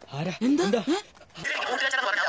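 Several short voice-like cries, each rising and falling in pitch, fill the first second. About one and a half seconds in, the sound cuts to people talking.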